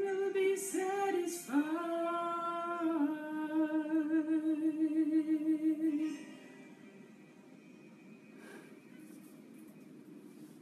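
A solo voice singing a few short phrases, then a long held note that moves into a wavering vibrato and ends about six seconds in. Only faint room sound follows.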